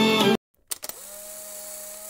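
Music stops abruptly about a third of a second in. After a short silence come a few clicks, then a steady electronic hum with a higher tone that slides up as it starts: the sound effect of an animated channel logo intro.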